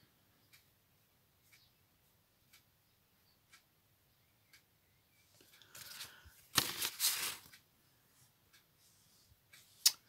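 Faint, regular ticks about once a second, then, about six seconds in, a short spell of paper rustling and handling of craft materials, loudest around the seventh second.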